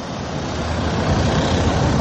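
Street traffic heard through an open window, a vehicle's rumble swelling louder as it passes.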